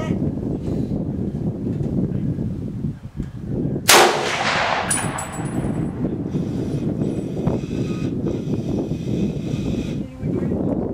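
A single gunshot about four seconds in, with a ringing tail that fades over about a second and a half. A steady low rumble runs underneath.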